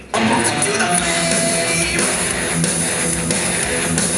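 Live rock band playing loud, with electric guitar strumming to the fore. The music drops out for a moment at the very start, then the band comes straight back in.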